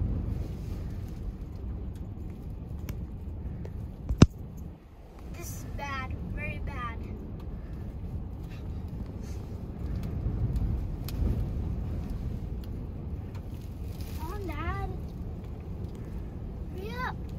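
Steady low rumble heard from inside a vehicle in strong wind. A sharp click comes about 4 seconds in. Short, high, wavering whining calls are heard around 6 seconds and again around 14 seconds.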